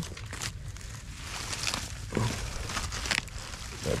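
Dry palm fronds and straw rustling and crackling in short bursts as a hand pushes them aside, with a brief low vocal sound about two seconds in.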